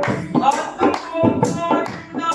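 Punjabi folk music: an upturned aluminium cooking pot struck by hand as a drum in a steady beat, with hand claps and a singing voice over it.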